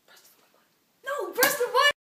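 A loud, wordless vocal cry about a second in, with a sharp hit partway through it; the sound cuts off suddenly.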